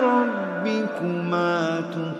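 A male voice reciting the Quran in a slow, melodic chanted style. The line falls in pitch, then settles on a long held low note.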